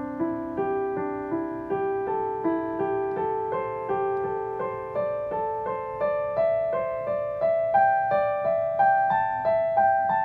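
Yamaha digital piano playing single notes slowly and evenly, just under two a second, in four-note groups of the Chinese pentatonic scale (do re mi sol la) that climb step by step in pitch.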